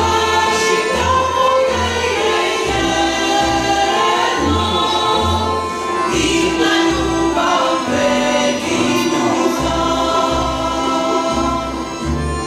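Women's choir singing long held notes, accompanied by a small string band with a double bass keeping a steady beat underneath.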